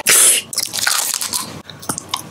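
Close-miked biting and crunching of a hard lollipop candy: a loud crunch right at the start, then a run of small clicks and crackles.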